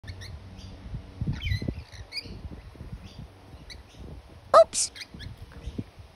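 Short, high bird chirps scattered throughout, with a low rumble about a second and a half in.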